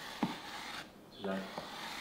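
Knife blade scraping across a slab of green chocolate, shaving it into curls, with a sharp tap of the blade about a quarter second in.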